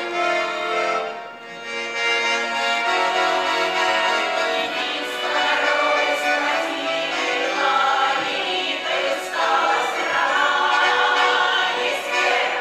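Accordions playing a folk tune alone, then a women's choir comes in singing with them about five seconds in.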